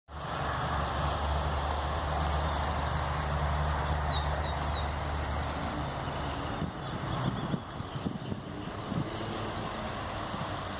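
A steady low engine rumble runs until about six and a half seconds in and then drops away, leaving uneven low bumps. A few short bird chirps come near the middle.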